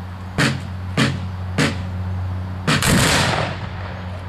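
A volley of black-powder muskets fired by a line of reenactors: one loud, ragged, drawn-out crack a little under three seconds in. Before it come three short sharp reports about half a second apart.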